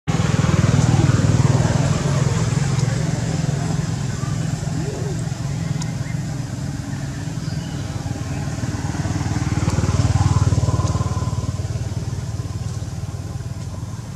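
A motor engine running steadily, swelling louder about a second in and again around ten seconds in.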